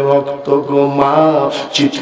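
A man's voice preaching in a chanted, sing-song delivery through a microphone and PA, drawing words out into long wavering notes.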